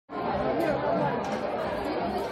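Indistinct background chatter of several people talking at once, with no single voice standing out.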